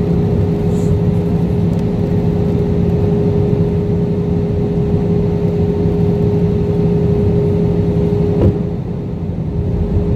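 Jet airliner cabin noise heard from a window seat over the wing during descent: a steady rush of engines and airflow with a constant low hum. A brief knock comes about eight and a half seconds in, after which the noise dips slightly for about a second.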